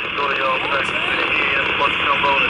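Two-way radio or scanner hissing steadily, with faint, garbled voice chatter coming through.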